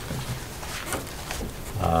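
Low room murmur with a few faint ticks, then a man's drawn-out hesitant "um" starting near the end.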